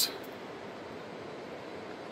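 Steady, even background hiss of outdoor ambience, with no distinct event.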